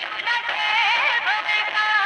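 Indian film-style song: a melody with wavering, ornamented pitch over a steady musical backing.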